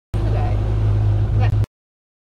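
Boat motor running steadily at speed with a low hum, cutting off suddenly about a second and a half in.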